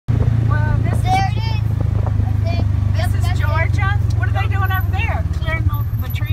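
Side-by-side utility vehicle's engine running with a steady low drone as it drives along a dirt road, heard from inside the open cab. Voices talk over it. Near the end the drone turns to a rapid pulsing.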